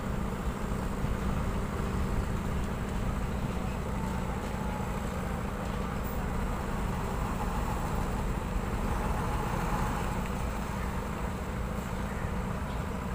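Concrete transit mixer truck's diesel engine running steadily with a low, even rumble.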